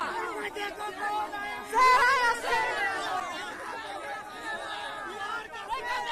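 Dense crowd of people talking and calling out over one another at close range, with one voice rising louder about two seconds in.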